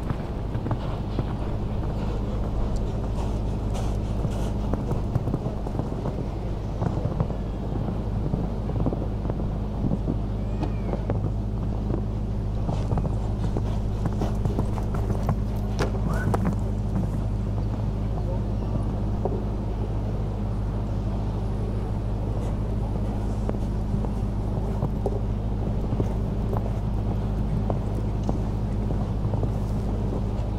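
Show-jumping horse cantering and jumping on a sand arena: soft hoofbeats and scattered knocks over a steady low hum, with distant voices.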